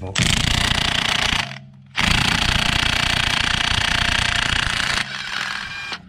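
Makita cordless impact wrench hammering as it undoes a wheel bolt, in two runs: a short one of just over a second, then a longer one of about three seconds after a brief pause.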